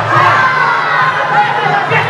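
Crowd of fight spectators shouting and cheering, many voices overlapping.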